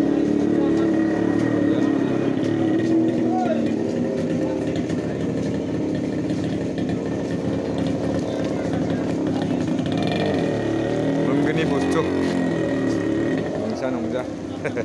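Street traffic: motor vehicle engines, motorcycles among them, running steadily close by, with voices mixed in.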